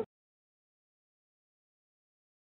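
Complete silence: the sound track goes blank right after a spoken word is cut off at the very start, and no sizzling is heard.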